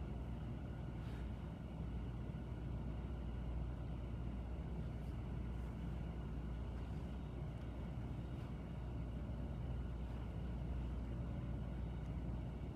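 Steady low rumble and hiss of background noise with a few faint, thin steady tones above it and several faint ticks.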